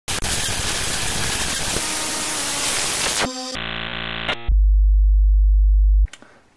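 Television static hiss for about three seconds, then a short buzzy electronic tone, then a loud low hum that cuts off suddenly: a glitchy TV-test-card intro effect.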